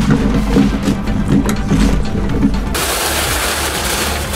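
Background music with a beat; about three seconds in, a sudden loud rush of cobble rocks pouring out of a tipped wheelbarrow.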